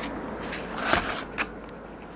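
Handling noise of an empty trading-card box being tilted and moved on a desk: a few light clicks and knocks, the loudest about a second in.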